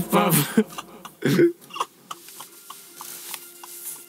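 A person coughing a few short times in the first two seconds, then faint room tone.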